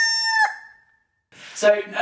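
A farmyard fowl call sound effect, a held, pitched squawk that cuts off about half a second in and fades away, followed by a brief silence before a man starts talking.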